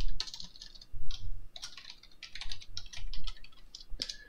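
Typing on a computer keyboard: an irregular run of key clicks, with louder strokes right at the start and about a second in.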